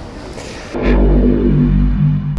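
A synthesized logo sting: a deep bass rumble with a low chord held over it, starting abruptly about three quarters of a second in.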